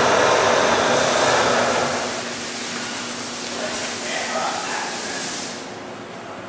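Compumill 3000 CNC vertical milling machine running a short program with no part in it, a steady whirring of its drives as it moves. The noise is loudest for the first two seconds, then eases off, and drops again near the end.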